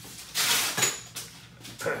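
Rustling handling noise with a brief light metallic clink as a metal extraction instrument is picked up, then a man clears his throat near the end.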